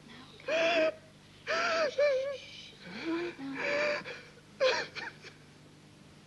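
A man crying out in distress, about five short, breathy wordless cries whose pitch bends up and down, the last about five seconds in.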